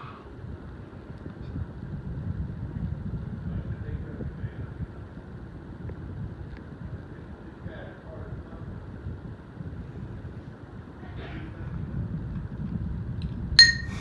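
Hampton Bay Huntington 52-inch ceiling fan running on high, its moving air rumbling on the microphone. Near the end there is one sharp ringing clink as the glass light shade is knocked.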